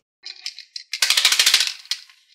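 Plastic hand-clapper toy shaken, its plastic hands clacking together in a rapid clatter for about a second, starting about a second in.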